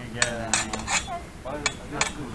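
Steel training swords clashing in sword sparring: a quick run of four sharp metallic clinks of blade on blade in the first second, then one more a little later.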